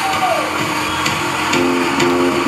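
Live rock band: a pitched glide falls away in the first half-second, then distorted electric guitar chords and cymbal hits come in about a second and a half in.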